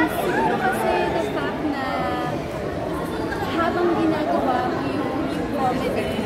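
Speech: a woman talking in an interview, with the chatter of a crowd behind her.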